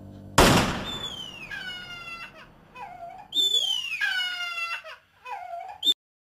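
A single sudden loud bang, a gunshot on the film soundtrack, followed by several high crying wails that fall in pitch.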